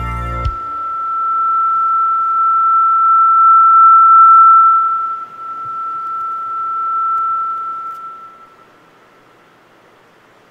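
Music cuts off abruptly about half a second in, leaving a single steady high-pitched pure tone. The tone swells, then fades away near the end into faint room hiss.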